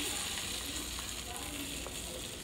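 Beaten egg sizzling as it pours onto the hot plate of a heart-shaped mini waffle maker: a steady hiss that eases off slightly.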